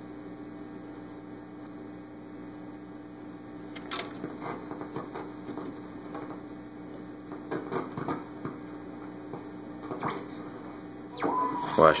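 Audio of a 1941 Howard 435A shortwave receiver with its beat-frequency oscillator on, played through an external amplifier: a steady low hum-like tone over static, with scattered crackles as the tuning knob is turned. A brief whistle glides in pitch about ten seconds in.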